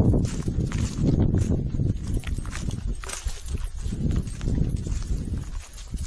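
Footsteps crunching through dry fallen leaves at a walking pace, a run of repeated low thuds and crackles.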